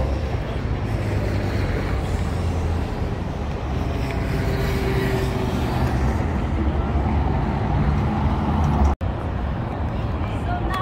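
Steady rumble of city road traffic, with cars and buses running by. The sound cuts out for an instant about nine seconds in.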